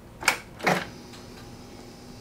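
Motorcycle ignition switched on: two short clicks about half a second apart, then a faint steady hum.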